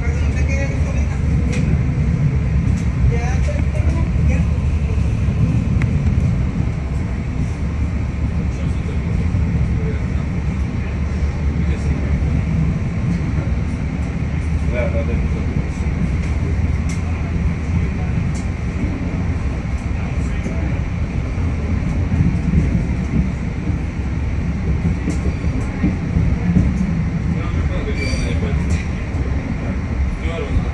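LIRR Budd M3 electric multiple-unit train running along the line: a steady low rumble of wheels and traction motors on the rails. A few sharper clicks come near the end as it passes over switches.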